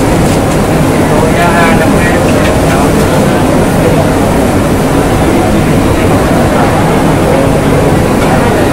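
Steady loud roar of a commercial kitchen's high-flame gas wok burners and extraction hood, with people talking in the background, most clearly a second or two in.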